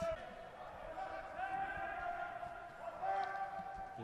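Faint echoing sound of an indoor football hall during play: scattered dull ball kicks, and a long held tone with a short break about three seconds in.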